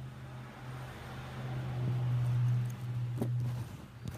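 A steady low hum that swells louder for a couple of seconds in the middle, then drops back, with a few light clicks near the end.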